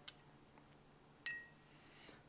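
Broken hardened-steel ball-bearing race fragments clinking once in a gloved hand, a short high metallic ring just over a second in.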